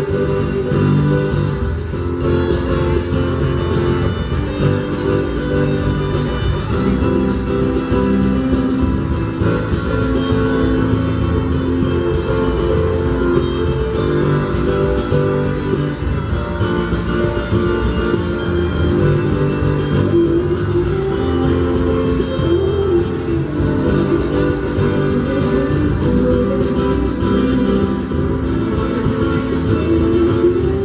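Live acoustic band music led by two acoustic guitars, picked and strummed through an instrumental passage.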